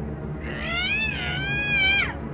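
A cartoon girl's frustrated, tearful whine: one long high-pitched cry starting about half a second in, rising, dipping, then held, and falling off at the end.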